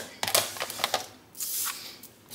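A few light clicks and taps of small craft supplies being handled on a tabletop, then a brief rustling swish.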